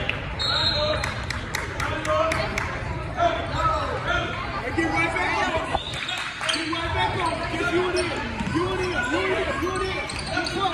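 A basketball being dribbled on a hardwood gym floor, with a quick run of bounces, about three a second, in the first few seconds. The bounces echo in the large gym under players' and spectators' voices and shouts.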